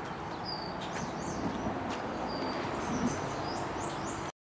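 Short high bird chirps scattered over a steady background noise.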